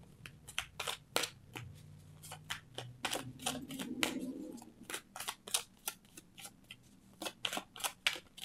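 A deck of tarot cards being shuffled by hand: an uneven run of crisp card snaps and flicks, two or three a second.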